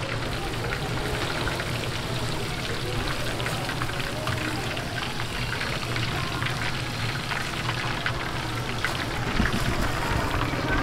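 Chicken pieces and green chillies deep-frying in a large pan of hot oil, sizzling with a steady, dense crackle as the wire basket is worked in and out of the oil.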